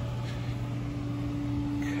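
Steady mechanical hum of running pool equipment, a constant low tone with no change in pitch or level.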